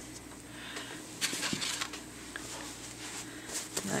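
Quiet room with a low steady hum, broken by a few faint clicks and rustles of small handling noises, one just after a second in and more near the end.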